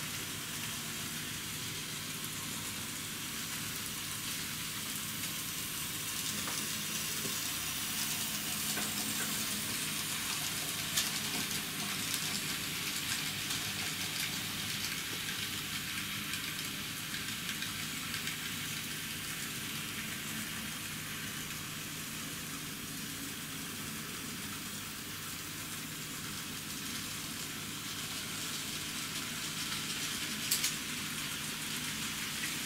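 N-scale model trains running through a fiddle yard: a steady rolling hiss of small wheels on the track over a faint motor hum, with a few sharp clicks around the middle.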